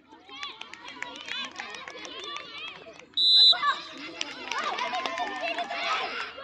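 A crowd of girls shouting and cheering across the court, with one short, loud whistle blast about three seconds in.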